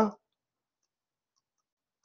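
A man's voice trails off right at the start, then near silence.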